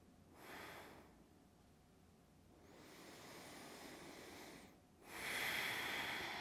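A woman's slow breathing while holding a yoga stretch: three soft breaths, a short one about half a second in, a longer one through the middle, and the loudest near the end.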